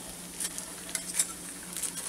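A metal spoon scraping and clinking lightly a few times in a crock pot's stoneware insert as crumpled tin-foil balls are lifted out.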